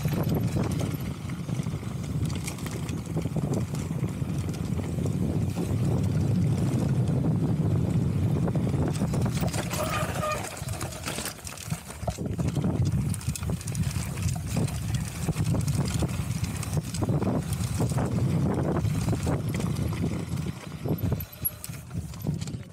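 Pivot Phoenix carbon downhill mountain bike rolling fast down a gravel track. Wind buffets the action-camera microphone as a heavy rumble, with tyres crunching on gravel and the bike rattling and knocking over bumps. It eases off briefly in the middle and again near the end as the bike slows.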